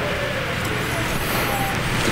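Steady background hiss and low hum of room noise, with faint off-mic voices.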